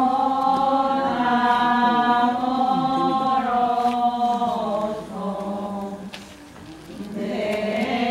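A group of people singing a slow religious hymn in unison, with long held notes. The singing trails off about five seconds in, and a new line begins near the end.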